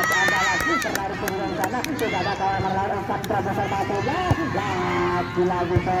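Spectators at a youth football match shouting and calling out, many voices overlapping, with one higher held shout in the first second.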